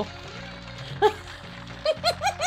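Steady background music with one short high yelp about halfway, then a woman starting to laugh in quick, high-pitched squeals right at the end.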